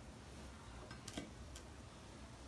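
A few light clicks against a glass baking dish as a milk-dipped champagne biscuit is set down in it, about a second in.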